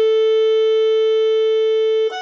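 Electronic keyboard holding one long, steady note of the melody, which gives way to the next notes at the end.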